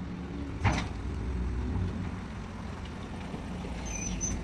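Rear-loading garbage truck's engine running with a steady low rumble. A sharp bang a little over half a second in stands out above it, and a brief high squeak comes near the end.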